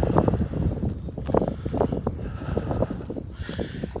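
Footsteps crunching through dry, cut grass and stubble in an uneven run of short crunches.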